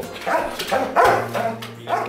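German Shepherd police dog barking, with the two loudest barks about a third of a second and a second in.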